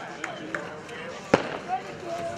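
A single sharp firecracker bang a little past halfway, over faint voices of spectators and a few small clicks.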